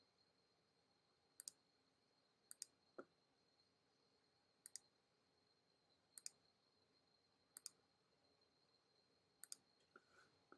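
Faint computer mouse clicks, each a quick press-and-release pair, coming about every one to two seconds as points are placed along a traced outline. A faint steady high-pitched whine runs underneath, and a single soft, lower knock comes about three seconds in.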